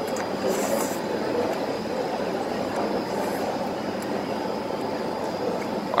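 Steady background din of a hawker food centre: an even rumbling noise with a faint, steady high whine. Two brief hisses come about half a second in and again past three seconds.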